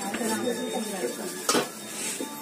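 Metal clinking from a puja plate and the small vessels on it, with one sharp clink about one and a half seconds in, over a murmur of voices.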